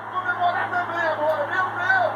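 Football match broadcast playing from a television: a commentator's voice, fainter and higher than nearby talk, over a steady low hum.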